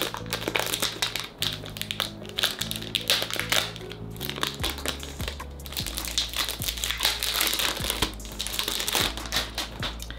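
Wrapping crinkling and tearing in irregular bursts as a perfume box is unwrapped by hand, over background music with steady low notes.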